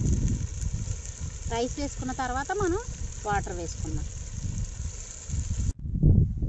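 Chicken curry sizzling in a pot over a wood fire, as a steady hiss under a low wind rumble on the microphone; a woman's voice comes in briefly in the middle, and the sound cuts off suddenly just before the end.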